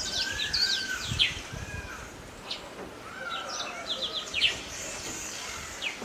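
Several small birds chirping in the trees: short, quick downward-sliding chirps repeated throughout, some in fast runs of three or four, over steady outdoor background noise with a low rumble.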